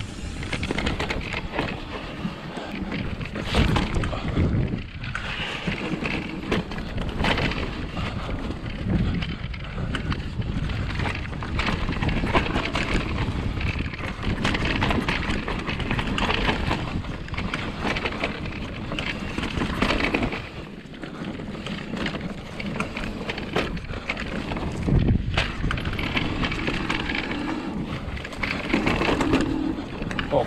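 Mountain bike ridden fast down a dirt forest trail, heard from a camera on the rider: a steady rush of tyre and wind noise on the microphone, broken by frequent knocks and rattles as the bike goes over bumps.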